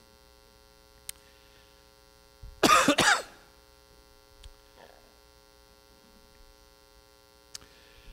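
A man coughs into a microphone about two and a half seconds in, a short cough in two quick bursts. Underneath runs a steady, faint electrical mains hum.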